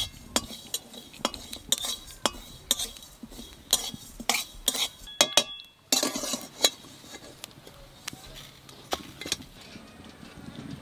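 Metal spatula stirring and scraping spice seeds dry-roasting in an aluminium wok: a series of sharp clinks and scrapes of metal on the pan, about one or two a second.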